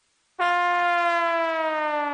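Comic sound effect: about half a second in, after a moment of dead silence, one long brassy tone starts abruptly and slides slowly down in pitch.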